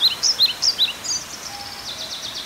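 A small bird chirping, a run of short high chirps about four or five a second, turning into a rapid high trill a little over a second in, over a steady hiss.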